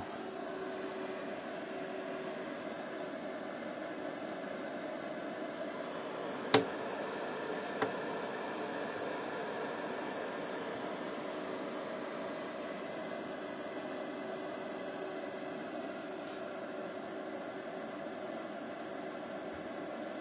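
Cooling fan of a Nevada PS-30M 30 A regulated power supply running steadily, a noisy whoosh like a small hairdryer. A sharp knock about six and a half seconds in and a lighter click a second later.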